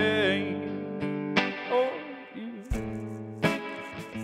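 Live acoustic rock: a man singing over a strummed acoustic guitar. A held, wavering sung note ends about half a second in and a short phrase follows. Then strummed chords ring on their own.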